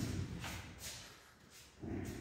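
Handling noise from a handheld camera being carried through the room: short rustling hisses and a low thud near the end.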